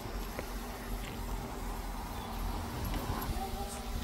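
DJI Mini 3 Pro drone hovering overhead, its propellers giving a faint steady buzz, over a low rumble.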